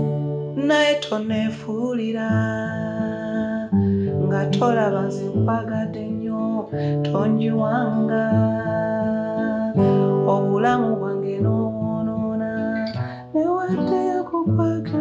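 Steel-string acoustic guitar played in the open key of D without a capo: strummed and picked open chords that change every second or two.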